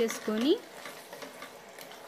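Mutton curry sizzling steadily in a pressure cooker pot while a wooden spatula stirs fresh tomato paste into the masala-coated meat.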